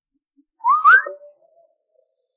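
Two quick rising whistle glides just over half a second in, the second climbing higher than the first.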